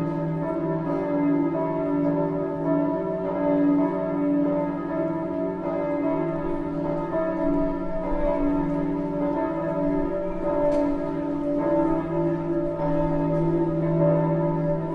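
Bells sounding in a continuous wash of overlapping, sustained tones that swell and fade slowly, with no distinct strikes.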